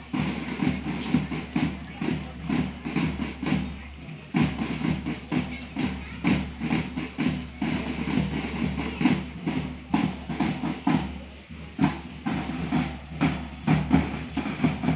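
Band music with drums beating a steady marching rhythm.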